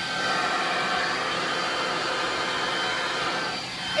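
Leaf blower running steadily and blowing air into a plastic-sheet blob, heard from inside the blob: a pretty loud, even rushing noise with a faint steady whine.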